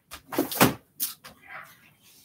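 A few short knocks and bumps of things being handled close to the microphone, the loudest about half a second in and another at about one second.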